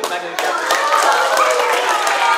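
Hand clapping in a rhythm together with a group of children's voices. The last clear clap comes about a third of a second in, and then the children's voices carry on.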